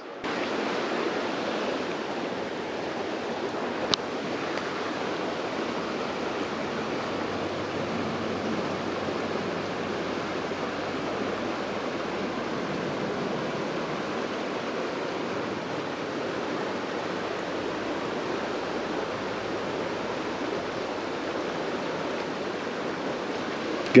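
Steady rush of a creek's running water, even and unchanging, with a single sharp click about four seconds in.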